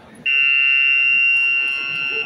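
Electronic buzzer sounding one loud, steady tone for about two seconds, starting a moment in.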